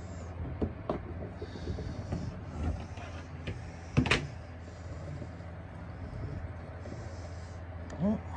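Clear plastic tub being handled and shifted on bark mulch: scattered clicks and rustles, with one sharp knock about four seconds in. A steady low hum runs underneath.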